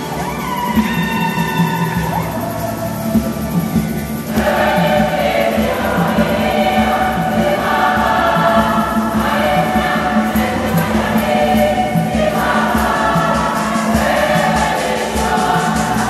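Women's church choir singing a Swahili hymn together, with instrumental accompaniment underneath; the voices swell fuller about four seconds in.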